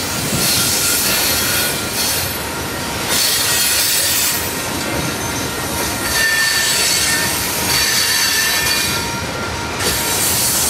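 Freight train of coal hopper cars rolling past close by: steady wheel-on-rail rumble that swells every second or two, with faint thin wheel squeals.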